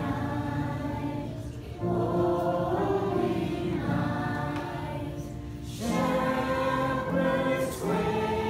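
Congregation singing a slow hymn together, held notes with brief breaths between phrases about two seconds in and again near six seconds.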